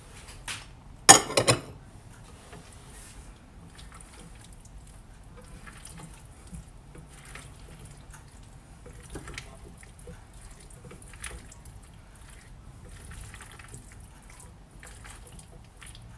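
A silicone spatula folds a mayonnaise-dressed pasta, potato and pea salad in a glass bowl: soft wet squelching and scraping, with a loud brief clatter about a second in.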